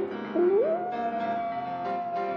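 Bass tuba played in its high register: a note with vibrato breaks off, then slides smoothly up to a higher note that is held long and steady. Soft piano sounds underneath.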